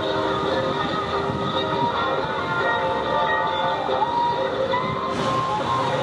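Loud music from loudspeakers, mixed with the engines of a group of Honda police motorcycles riding in formation.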